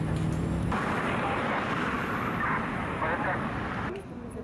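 Outdoor street ambience with traffic noise and indistinct voices. A steady low hum cuts off abruptly under a second in, giving way to a brighter wash of street noise with voices.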